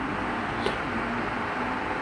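Steady background room noise, a soft even hiss and hum with no clear source, with one faint click a little after half a second in.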